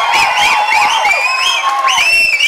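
Audience cheering, with many shrill calls gliding up and down in pitch over one another.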